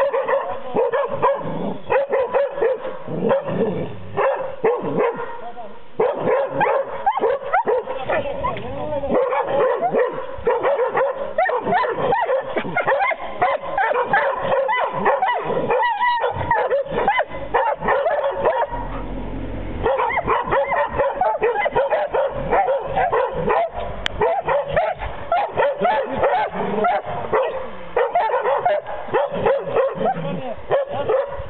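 Young hunting dogs baying at a cornered wild boar: rapid, almost unbroken barking mixed with yips, with a short lull a little past the middle.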